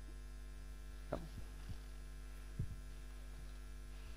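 Steady electrical mains hum in the recording, with a few faint, short knocks.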